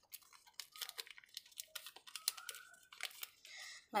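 Origami paper being creased by hand: a run of faint, irregular crackles and ticks as the edges of a paper pyramid are pinched into mountain folds.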